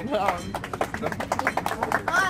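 A small group of people applauding, quick irregular claps, with voices over the start.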